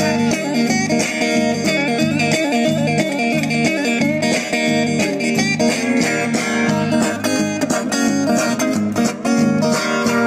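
Steel-string acoustic guitar strummed in a live performance, with a man singing over it.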